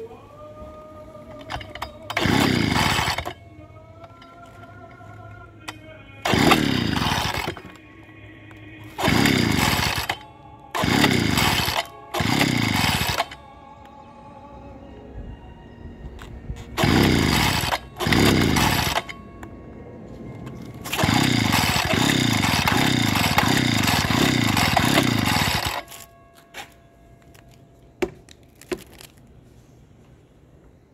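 Echo two-stroke handheld leaf blower being pull-started with the choke out: the recoil starter is yanked again and again, the engine cranking without catching. About seven single pulls a second or so long are followed near the end by a longer bout of about five quick pulls in a row.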